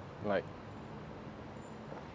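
Steady outdoor city background noise, an even hum of distant traffic, after a single spoken word.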